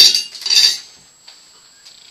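Cutlery clinking and clattering against a dish for under a second, followed by a couple of faint small knocks.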